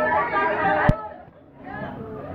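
A room full of people chattering at once, with a sharp click about a second in. After the click the talk drops away briefly, then quieter voices come back.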